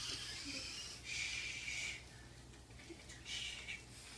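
A person breathing out in three short, breathy puffs, each under a second long.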